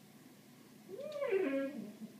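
A chocolate Labrador–Weimaraner mix dog whining once, starting about a second in; the whine rises and then falls in pitch. He is whining at birds he sees outside.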